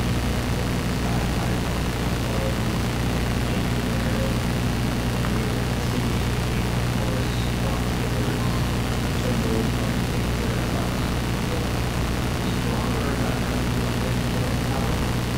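Steady low electrical hum from the sound system, with a faint, distant voice of someone speaking off-microphone.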